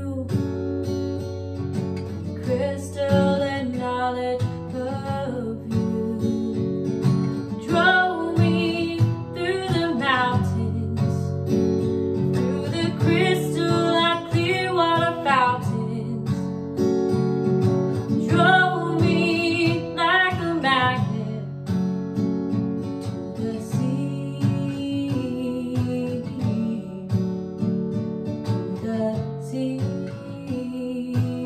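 Acoustic guitar played steadily, with a woman singing in drawn-out phrases, mostly in the first two-thirds. The guitar carries on alone near the end.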